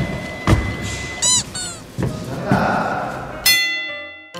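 A few dull thumps and a short squeaky chirp, then a bright musical sting starts near the end, leading into light keyboard music.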